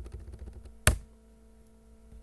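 Light typing on a computer keyboard, with one much louder click a little under a second in.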